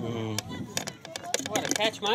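Spectators' voices talking near the microphone, with a few sharp clicks in the second half.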